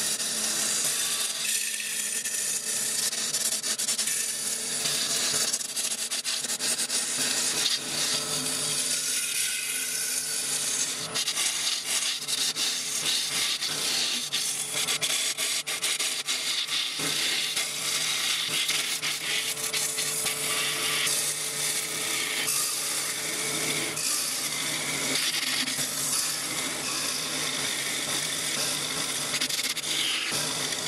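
Turning gouge cutting a spinning yew blank on a wood lathe: a continuous scraping hiss as shavings peel off the wood, with a faint steady hum of the running lathe underneath.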